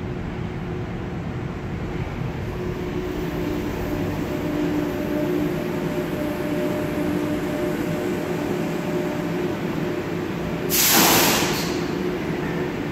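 H-Bahn suspension railway car running and slowing into a station, heard from inside: a steady low rumble with a faint whine through the middle, then a loud hiss lasting about a second near the end as the car comes to a stop.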